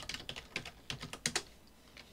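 Computer keyboard typing: a quick run of about ten keystrokes that stops about a second and a half in.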